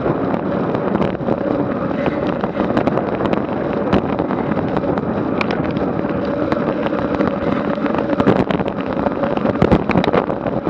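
Steady rush of wind on an action camera's microphone and road-bike tyres on asphalt while riding in a group at about 23 mph, with a few faint clicks.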